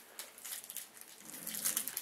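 Trading cards and a foil card-pack wrapper being handled: light rustles and clicks that grow busier and louder toward the end as the pack is torn open.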